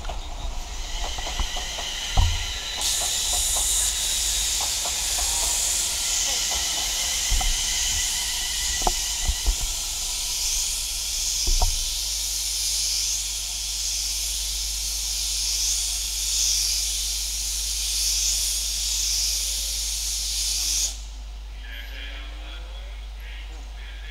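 A loud, steady air hiss from a Class 390 Pendolino electric train standing at the platform. It starts about three seconds in and cuts off suddenly near the end. Several sharp knocks and clicks of camera handling fall in the first half.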